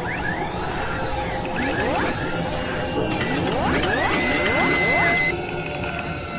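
Sci-fi mechanical sound effects: repeated rising whirs and bursts of clicking, with a high tone held for about a second near the end that cuts off suddenly, over quiet background music.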